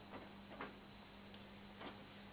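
Faint handling clicks and taps from a banjo being settled into position, three small ticks spread over two seconds, over quiet room hum; no strings are played.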